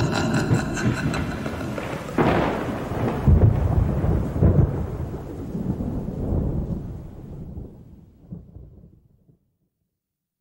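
A thunder sound effect: a sharp crack about two seconds in, then a deep rolling rumble that slowly dies away to silence by about nine seconds in.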